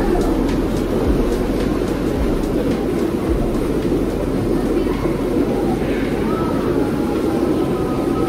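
Hot tub jets churning the water: a loud, steady rushing rumble, with children's voices faint above it.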